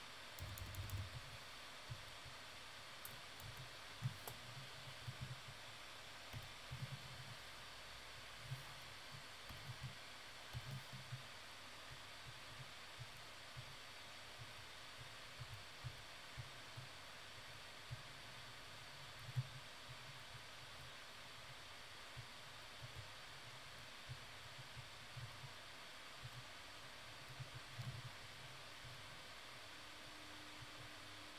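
Faint steady hiss with scattered soft low thumps and a few light clicks: the desk noise of working a computer's input devices, such as pen-tablet taps and keyboard shortcuts, during digital painting.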